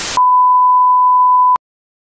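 A short rush of TV static hiss gives way to a single steady, loud test-tone beep, a pure sine tone lasting over a second. The beep cuts off abruptly with a click, then silence.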